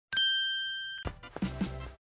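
A bright chime sound effect dings once, ringing with two clear tones that fade over about a second, followed by a shorter, noisier sound effect that stops just before the end.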